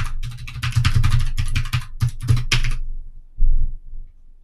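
Computer keyboard being typed on in a quick run of keystrokes that stops a little under three seconds in, followed by a single low thump near the end.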